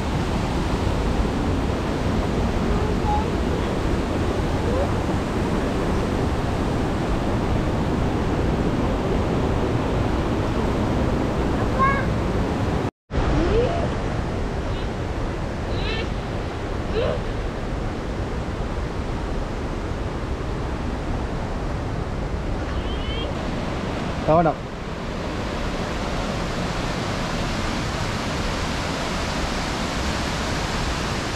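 Steady rushing of fast-flowing water from the Ramboda Oya waterfall stream, a continuous roar that cuts out for a moment about halfway through.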